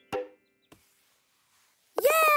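A single short knock with a brief ring just after the start, then a faint click and near silence with a soft hiss.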